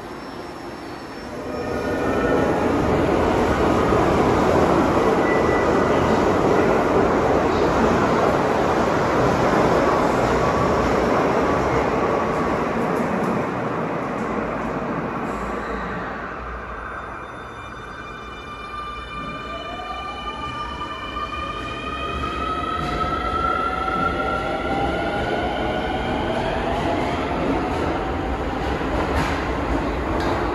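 Subway train pulling out of an underground station: rumble and rolling noise build about a second and a half in, stay loud for about ten seconds, then fade. In the second half, a whine of electric traction motors with several pitches climbing together rises slowly as a train accelerates in the tunnel.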